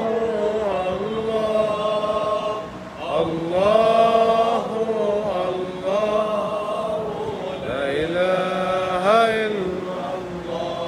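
A group of men chanting an unaccompanied Islamic religious chant in Arabic, in long held melodic phrases with a short break for breath about three seconds in and ornamented gliding notes near the end.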